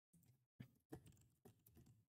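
Very faint typing on a computer keyboard: a few quiet, irregular key clicks starting about half a second in.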